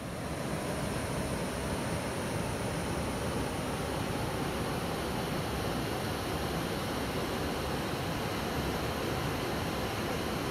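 Waterfall: a steady rush of falling water that grows louder in the first second, then holds level.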